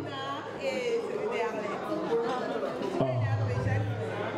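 A man talking into a microphone, amplified through a PA, over background music, with guests chattering around him.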